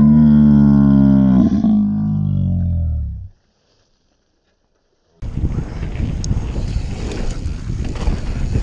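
A person's long, loud drawn-out yell, sliding slowly down in pitch over about three seconds, then cutting off. After about two seconds of silence, wind noise buffets a bike-mounted camera's microphone on a downhill ride.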